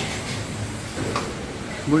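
A steady low hum with two faint knocks, one at the start and another about a second in.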